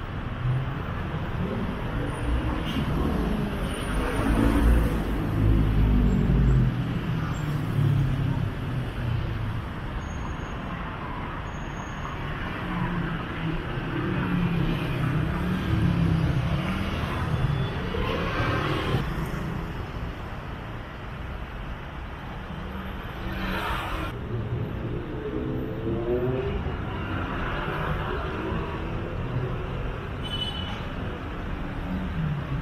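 City road traffic: cars and buses passing in a steady noise. A heavy vehicle's low rumble is loudest about four to six seconds in.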